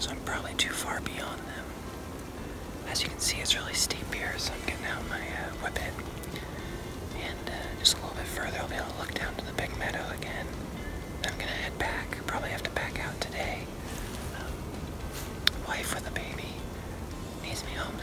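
A man whispering close to the microphone, in short phrases with pauses.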